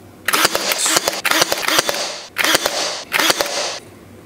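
Wood glue squeeze bottle sputtering as it is squeezed, air and glue spitting from the nozzle in crackly, clicking bursts. There are three bursts: a long one of about two seconds, then two short ones.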